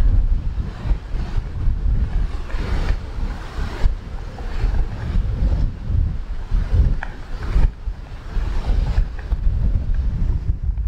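Strong gusting wind buffeting the microphone: a loud low rumble that swells and drops with each gust.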